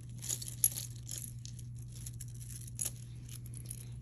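Costume jewelry being handled: light clicks, clinks and rustles of metal bracelets and beads, with one sharper click under a second in, over a steady low hum.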